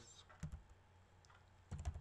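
Computer keyboard keys tapped while numbers are typed into code: a faint keystroke about half a second in, then a quick run of keystrokes near the end.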